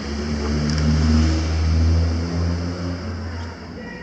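A car engine running, a low steady hum that swells and then dies away shortly before the end.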